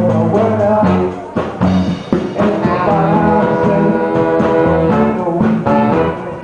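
Live band with a horn section of alto and tenor saxophones and trumpet, over electric guitar, bass and drums with a steady beat. From about halfway through, the horns hold long notes together.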